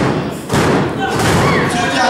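A thump on the wrestling ring's canvas mat about half a second in, with people's voices around it.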